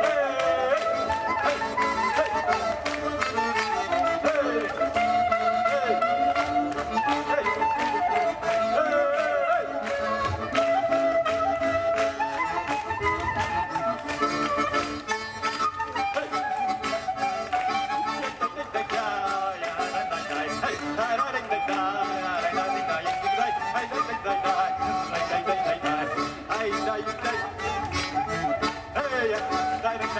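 Klezmer music played live: a sliding, ornamented saxophone melody over sustained accordion chords.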